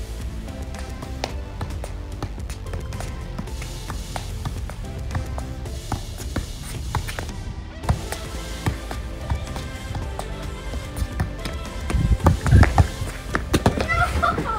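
Background music over a soccer ball being juggled with the feet, the ball's contacts heard as irregular short taps. A few louder thumps come near the end.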